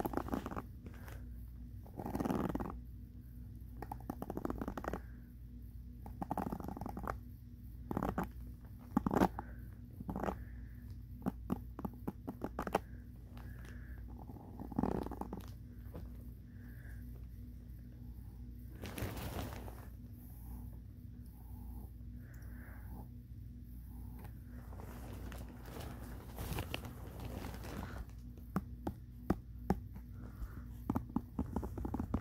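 Brush bristles scratched and tapped close to the microphone: irregular scratchy strokes and clicks with a few longer swishes, over a steady low hum.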